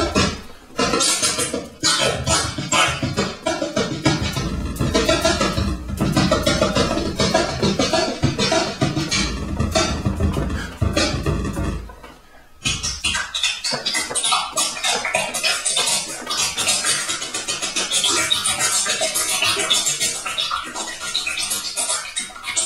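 Live electronic music played on the exo-voice, a wearable breath-and-hand controller driving software synths, with glitchy, scratch-like sounds over a heavy bass. About twelve seconds in it cuts out for half a second and comes back thinner and higher, mostly without the bass.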